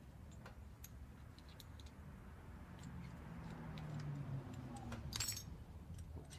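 Faint, scattered metal clicks and ticks from a climbing harness's ring and bolt hardware being handled while the bolt is worked loose with an Allen wrench. A sharper clink of metal comes about five seconds in, over a low rumble that swells in the middle.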